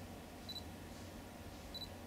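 Two short high-pitched beeps, a little over a second apart, from a DSLR camera's autofocus confirming focus.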